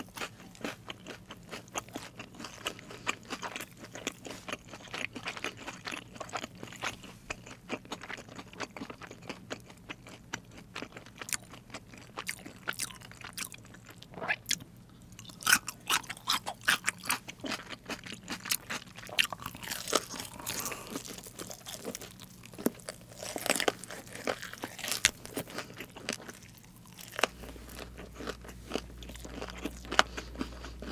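A person biting and chewing crunchy fried chicken close to the microphones, the crisp coating crackling in many short crunches that come thickest in the second half.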